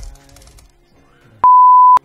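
A loud, steady single-pitch beep lasting about half a second near the end, cutting off abruptly: a censor bleep laid over a word in a profane rant. Faint background music sits under the first part.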